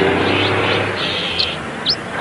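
Birds chirping, a few short rising chirps, over a steady low hum of background ambience.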